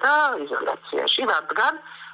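A woman speaking Georgian over a telephone line, the voice narrow and thin, with a faint steady hum underneath.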